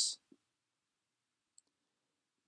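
The hissing end of a spoken word, then a pause of near silence broken by a few faint, tiny clicks.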